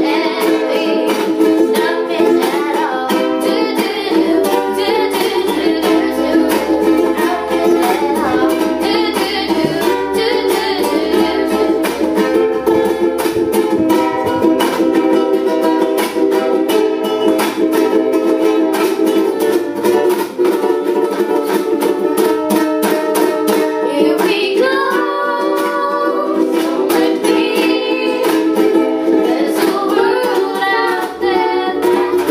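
Three ukuleles strummed together in a steady rhythm, with young girls' voices singing along.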